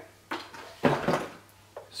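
Hands rummaging among the contents of a cardboard activity-pack box: two short knocks with rustling, the second louder about a second in, and a faint tap near the end.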